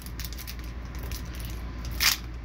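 Foil wrapper of a Pokémon booster pack crinkling as hands work it open, a dense run of small crackles and clicks.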